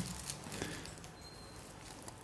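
Quiet room tone with faint small handling sounds from gloved hands passing dental instruments, and a brief faint high squeak about halfway through.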